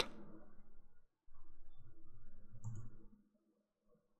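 Faint low room noise with a single computer mouse click a little under three seconds in.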